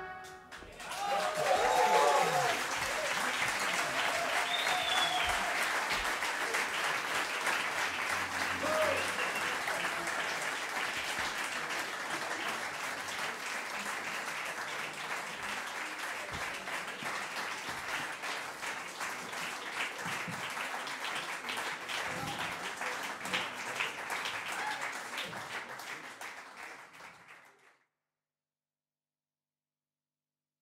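A club audience applauding steadily after a jazz piece ends, with a few shouts in the first couple of seconds. The applause thins out and stops shortly before the end.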